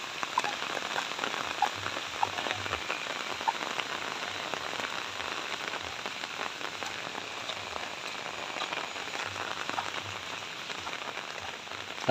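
Steady rain falling on the ground and vegetation: an even hiss with scattered small drop taps.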